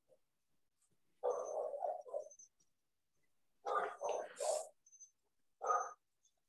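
An animal calling in three bursts of several quick calls each, heard through a video-call microphone.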